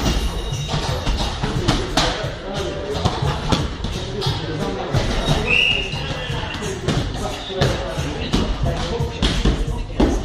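Background music with a voice in it, over a run of short thuds from boxing gloves hitting focus mitts.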